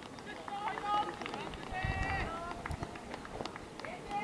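Trackside spectators shouting encouragement at runners in a middle-distance race, with a few long held calls about a second in and again around two seconds in, over the quick patter of running footsteps on the track.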